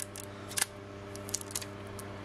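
Light clicks and clinks of a small metal bucket and its wire handle, with ornaments knocking in a plastic bin as they are handled. There is one sharper click about half a second in and a few quicker ones around a second and a half, over a steady low hum.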